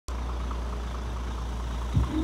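Dump truck's diesel engine idling, a steady low rumble, with a short thump at the very end.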